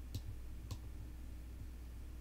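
Two clicks of a computer mouse button, about half a second apart, over a steady low hum.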